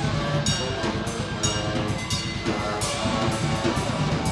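A live band playing: saxophone and electric guitar over a drum kit, with cymbal strokes about every half second.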